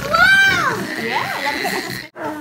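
A child's high-pitched squeal that rises and falls, followed by lively mixed voices of children and adults.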